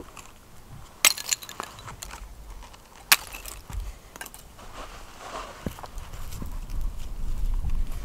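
Ice being broken and cleared by hand from a garden bed: two sharp cracks about one and three seconds in, between softer crunching and rustling.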